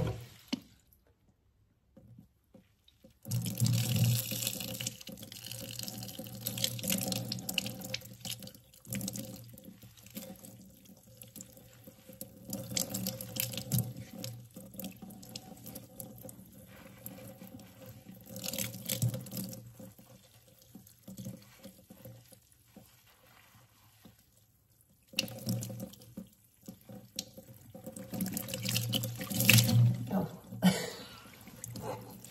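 Water poured from a glass measuring cup over a head of lathered hair, splashing and draining into a kitchen sink as the shampoo is rinsed out, with hands rubbing the wet hair. It starts about three seconds in, comes and goes in uneven pours, eases off for a few seconds and picks up again near the end.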